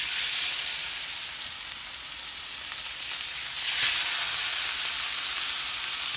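Raw chicken breasts sizzling as they go into a hot non-stick pan of melted butter. The sizzle starts suddenly and flares up again about four seconds in.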